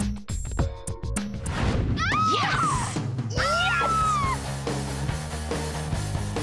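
Upbeat dance-pop music with a sharp, regular beat, broken about two seconds in by swooping, sliding high sounds, then settling into a steady low sustained chord.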